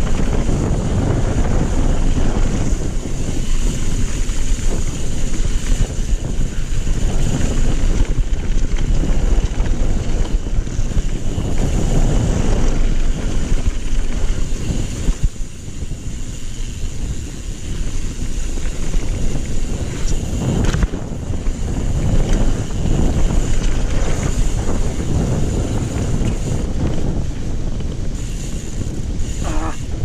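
Wind noise on the microphone and the rumble and rattle of a 27.5-inch full-suspension mountain bike's tyres and frame over a dirt downhill trail at speed. The noise is steady and loud, easing briefly about fifteen seconds in.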